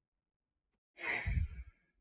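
A man lets out a short, breathy sigh, a soft 'oh', about a second in, after a moment of silence.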